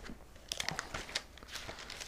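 Bible pages being leafed through by hand: a run of soft paper rustles and flicks, starting about half a second in.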